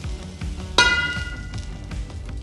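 Metal wok spatula scraping stir-fried greens out of a tilted wok, then striking the wok once with a sharp clang that rings on for about a second.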